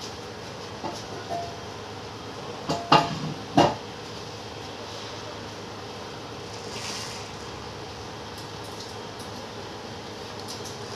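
A few sharp metallic knocks and clinks with a short ringing tail, the two loudest close together a little past three seconds in, over a steady hum of room noise.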